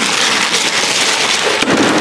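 Gift wrapping paper being ripped and crumpled by a young chimpanzee's hands: a loud, dense crackling and tearing.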